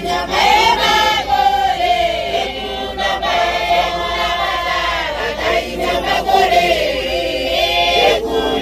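A congregation singing together as a choir, many women's and men's voices, carrying on without a break.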